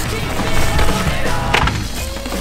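Freeride mountain bike clattering down a rocky dirt trail, tyres and frame knocking over rocks and roots, with a sharp knock about one and a half seconds in; backing music with a steady low beat plays under it.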